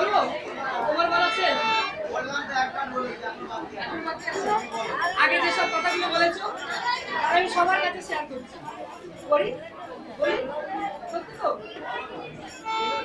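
Voices talking amid crowd chatter, close and overlapping.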